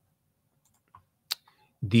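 Near silence broken by a single sharp click about a second in; speech begins near the end.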